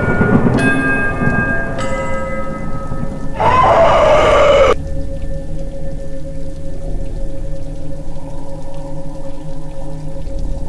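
Horror soundtrack sound design: abrupt blocks of ringing, chiming tones over a rumbling noise, the loudest a sweeping burst that cuts off suddenly about five seconds in. After it comes a steady low drone with one held tone.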